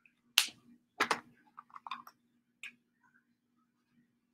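Sheet of paper being handled and folded: a sharp crisp snap, then a double snap, a short run of small crinkles, and one more click.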